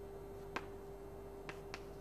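Chalk tapping on a blackboard while writing, three short sharp clicks, over a steady faint hum.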